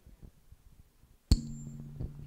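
Handheld microphone being handled: faint rustling, then a sharp knock about two thirds of the way in, followed by a steady low electrical hum through the sound system.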